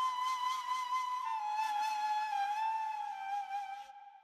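Solo flute playing slow held notes around 1 kHz that step slightly downward, with breathy air on the tone, fading out near the end. It is heard through a dynamic EQ that is turning down its 1 kHz mid range as it swells.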